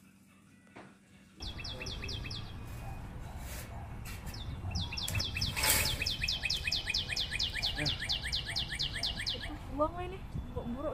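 A songbird singing a fast series of repeated, downward-sweeping high whistled notes, about five a second: a short burst about two seconds in, then a long run of about five seconds. A low rumbling noise on the microphone runs underneath, and there is a sharp click about midway.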